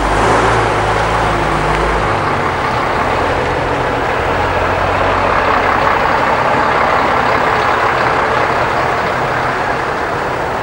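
Eight-wheel tipper lorry's diesel engine running as it drives slowly past close by. Its deep engine note is strongest at first and drops away about two seconds in, leaving a steady rumble of engine and tyres on the muddy track.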